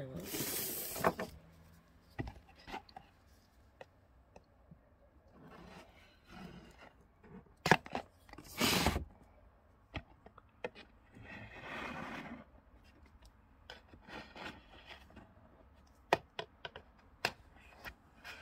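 A soft clay slab being cut and scraped around a template with a hand tool on a glass board, in short irregular strokes with a few sharp clicks in between.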